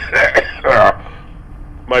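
A man acting out a coughing fit with a few short, harsh, voiced coughs in the first second, then a pause before speech resumes. It is heard on an old reel-to-reel tape recording.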